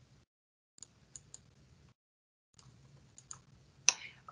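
Faint, irregular clicks, about half a dozen in small clusters, the sharpest just before the end, heard over a video-call line that drops to dead silence between them.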